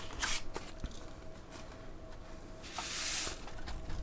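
Sheet of paper rustling and shredded flake pipe tobacco sliding off the folded paper into its small cardboard box. There are a few light clicks of handling near the start, then a soft hiss of sliding lasting under a second, about three seconds in.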